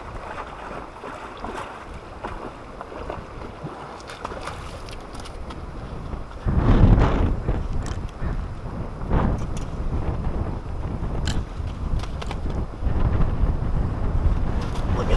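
Wind buffeting the camera's microphone, a steady low rumble with a strong surge about six and a half seconds in and a few faint clicks scattered through.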